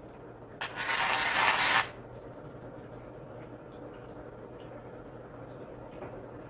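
Salt shaken from a shaker over a pot: a dry, gritty hiss lasting just over a second, starting about half a second in. A faint steady low hum runs underneath.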